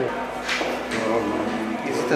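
Indistinct voices over background music in a busy room, with a brief hiss-like rustle about half a second in.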